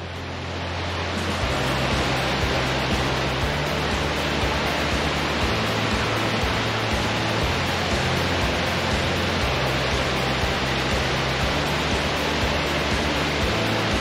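Steady rushing of the Düden waterfall's white water pouring over a cliff edge, swelling in over the first two seconds. Background music with low bass notes plays underneath.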